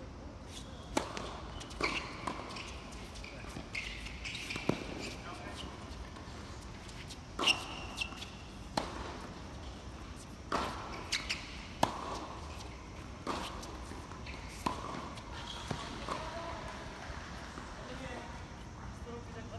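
Tennis rally: a serve, then tennis balls struck by racquets about every one to two seconds, the sharp hits echoing, with players' voices and shouts between shots.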